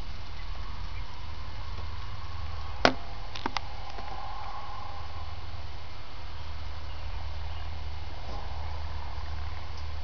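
Biomass fire burning in a biochar burner: a steady low rumble with one sharp pop about three seconds in and two lighter clicks just after it.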